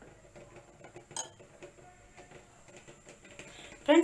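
A steel spoon stirring thick semolina batter in a glass bowl: faint soft scraping, with one sharp clink of the spoon against the glass about a second in.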